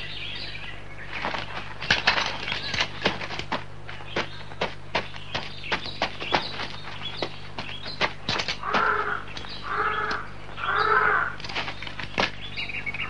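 Horse hooves clip-clopping in an uneven run of sharp clicks, followed near the end by three crow caws in quick succession.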